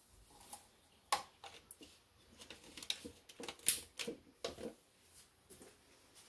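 A black plastic measuring spoon and a plastic mixing bowl being handled, making a string of light clicks and knocks. The sharpest comes about a second in, followed by a cluster of smaller ones.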